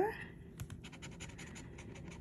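A coin scraping the latex coating off a paper scratch-off lottery ticket in a run of quick, short, irregular strokes.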